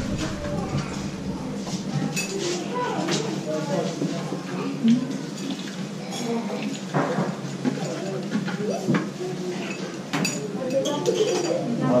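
Metal ladles and wire strainer baskets clinking against a large steel broth pot, a few separate sharp clinks over voices talking in the background.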